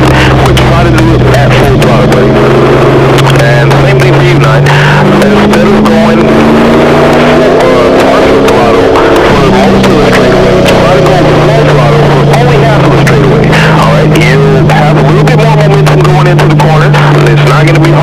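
Stock car's V8 engine running hard, heard loud from inside the cockpit. Its pitch rises about five seconds in, drops back a few seconds later, then holds steady as the car laps the oval.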